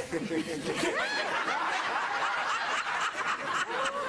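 People laughing, led by a high-pitched voice giggling in rising and falling peals from about a second in.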